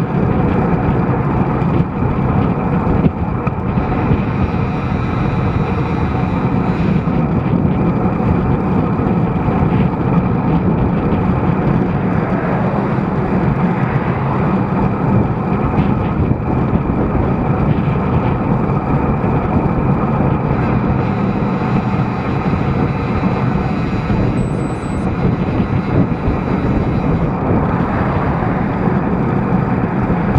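Steady, loud wind noise buffeting the microphone of a camera on a bicycle riding along the road.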